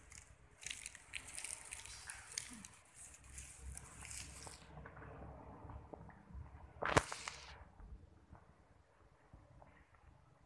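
Faint rustling and small clicks from a handheld phone being carried while walking, with one sharp snap about seven seconds in.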